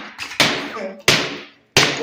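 Hammer blows chipping old floor tiles off a concrete floor: three sharp strikes about two-thirds of a second apart, each with a short ringing tail.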